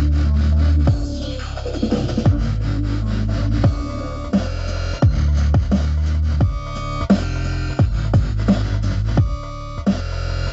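Dubstep played by a DJ through a sound system: deep sustained bass with a heavy hit about every second and a half, each sweeping down in pitch.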